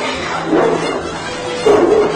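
Rottweiler barking during an attack on a man, over background music.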